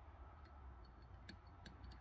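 Near silence: room tone with low hum and a few faint ticks.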